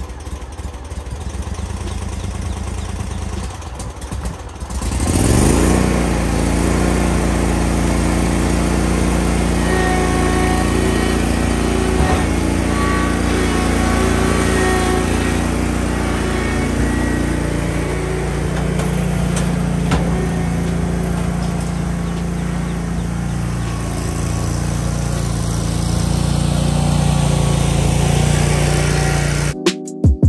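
Engine of a Bad Boy Rebel 61-inch zero-turn mower running, throttled up about five seconds in with a rising pitch, then holding a steady high speed.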